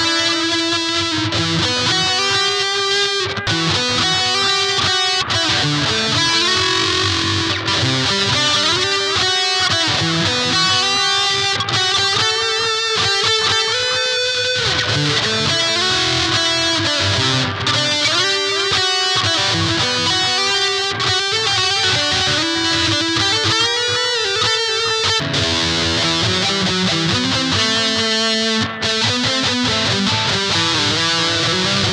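SG-style solid-body kit electric guitar played in a lead line of picked single notes and quick runs, with a change in the playing about 25 seconds in.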